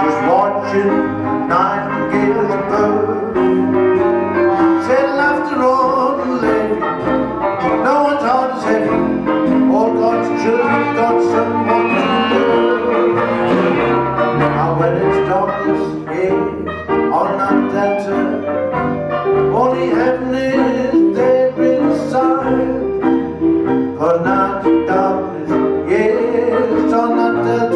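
A traditional New Orleans jazz band playing an instrumental passage live: clarinet, trombone and saxophone carry the melody over double bass, drums and piano.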